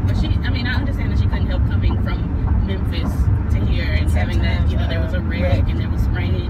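Steady low rumble of a car driving, heard inside the cabin, under a woman talking.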